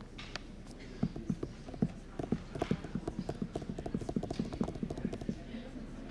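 A quick run of low knocks or taps, starting about a second in, getting faster and stopping shortly before the end, over a faint murmur of voices.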